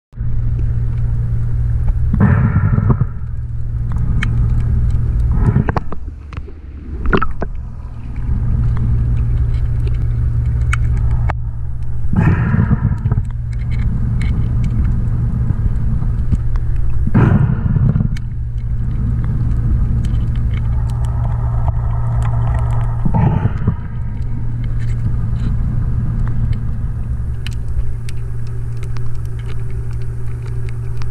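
Underwater recording: a steady low rumble and hum, broken about six times by roughly second-long gushes of a diver's scuba regulator exhaust bubbles, with faint clicks of pliers and wire.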